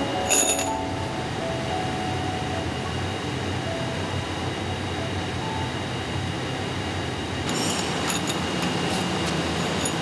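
Steady factory machinery noise, with a sharp metallic clink just after the start and a run of clinks near the end as steel chisel blanks are handled and knock against one another.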